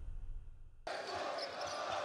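The low tail of the intro music fades, then about a second in the arena sound cuts in suddenly: a basketball being dribbled on a hardwood court over the murmur of a crowd in a large hall.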